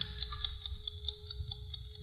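Faint, rapid, even ticking of a watch, the sound effect of the gold watch being dangled for hypnosis, over a thin steady hum.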